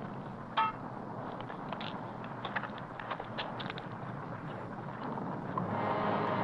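Film sound effect of rising lava: a steady hissing rumble with scattered small crackles, and one brief sharp sound about half a second in, growing louder near the end.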